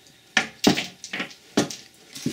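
Handling noise: about four short, sharp clicks and rustles as jewelry is picked up and moved on a wooden tabletop.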